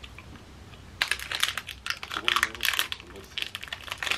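A snack wrapper crinkling and crackling in the hands as it is opened, a quick run of crackles starting about a second in.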